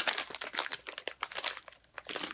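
Thin white protective wrapping crinkling as it is pulled by hand off a phone tripod's folded legs, in quick irregular rustles that thin out near the end.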